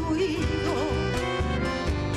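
Chamamé played live by a band, with a piano accordion carrying the melody over guitar, bass and percussion, and a woman singing.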